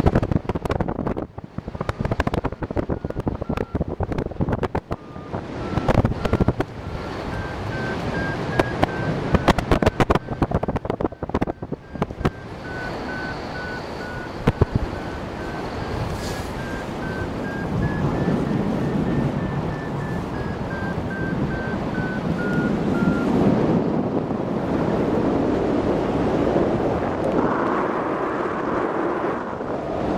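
Wind rushing and buffeting the microphone in paraglider flight, gustier in the first half. Over it a variometer beeps in quick, even pulses whose pitch drifts up and down with the climb rate, stopping about three-quarters of the way through.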